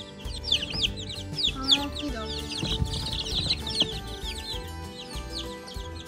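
A brood of young chicks peeping: many short, high calls overlapping, several a second.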